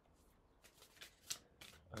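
Oracle card deck being shuffled by hand: a few faint, short flicks of cards against each other, spaced irregularly through the near-silent window.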